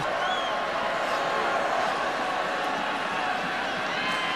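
Stadium crowd noise: a steady din of many voices from a large football crowd, with no single sound standing out.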